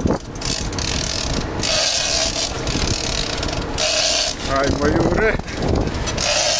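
Fishing reel ratcheting in stretches of about a second while a fish is fought on a heavily bent rod. A voice calls out briefly near the end.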